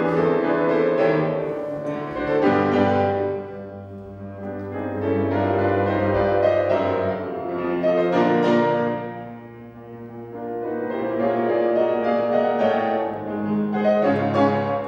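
Classical music led by piano, in slow phrases that swell and fade every few seconds over held bass notes.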